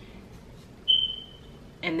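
A single short high-pitched tone, like a squeak or beep, about a second in, lasting about half a second and fading out, over quiet room tone.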